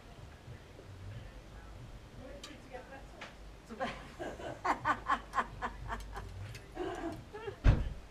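A woman laughing in a quick run of short, evenly spaced bursts, with a brief single thump near the end.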